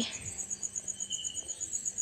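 An insect chirping in the background: a steady, rapid, high-pitched pulsing of about eight pulses a second.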